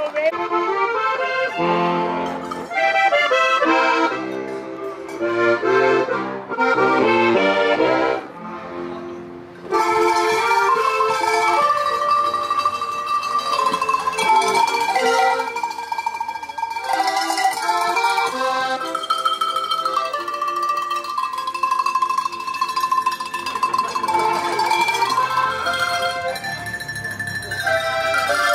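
Alpine folk tune played on an accordion together with a set of tuned cowbells struck on a table. The music dips briefly about eight seconds in, then carries on.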